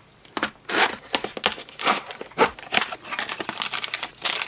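Small cardboard mailer box being opened by hand and its packing handled: a quick run of uneven crinkling, scraping and tearing noises from the cardboard flaps and the foam inside.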